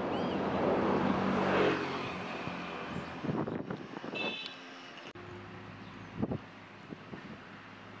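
A motor vehicle passes, growing louder to a peak about a second and a half in and fading away over the next couple of seconds.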